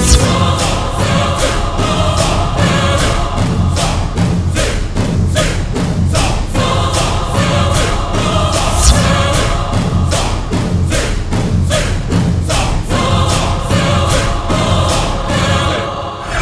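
Dramatic background score with choir-like voices over a steady run of percussion hits, with one louder hit about nine seconds in.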